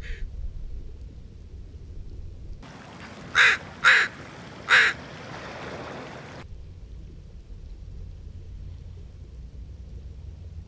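A crow cawing three times in quick succession over the steady hiss of the shoreline. Either side of the calls there is only a low outdoor rumble.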